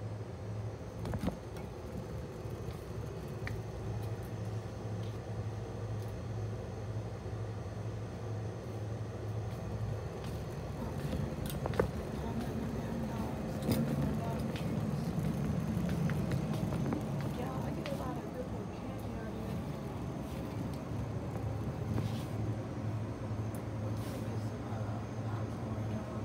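Wire shopping cart rolling over a concrete store floor: a steady low rumble with a few sharp clicks and rattles, and muffled voices in the background.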